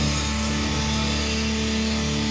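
Live rock band holding one sustained chord that rings steadily, with no drum strikes.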